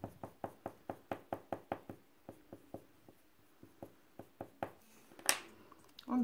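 Quick light taps of a small stick dabbed against a foamiran petal on a tabletop, about five a second for two seconds, then slower and scattered. A single louder knock comes near the end.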